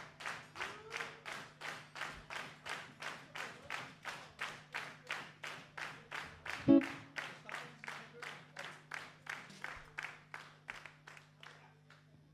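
Audience clapping in unison, about three claps a second, slowly fading away. About halfway through, a single plucked electric guitar note rings out louder than the claps.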